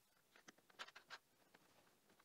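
Faint small metallic clicks and scrapes as a metal cap is set onto a line-tap piercing valve on a copper tube and started on its threads, clustered in the first half, then only a few tiny ticks in near silence.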